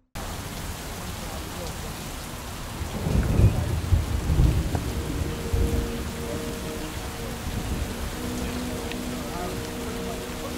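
Steady rain falling on the lake and bank, heard as an even hiss. A louder low rumble comes between about three and six seconds in, and a faint steady hum joins about halfway through.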